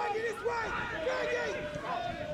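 Distant voices of players and spectators calling and shouting across an outdoor football pitch.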